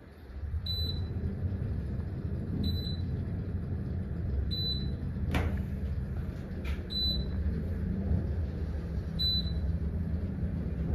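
Otis Series 7 elevator car travelling upward: a steady low rumble of the ride starts about half a second in. A short high beep sounds about every two seconds, and there is one sharp click a little past halfway.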